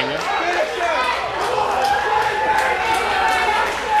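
Wrestling crowd in a hall chattering and shouting after a big slam, many voices overlapping, with one drawn-out shout held through the middle.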